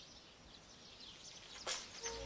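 Faint outdoor ambience with faint bird chirps, and a short burst of noise near the end.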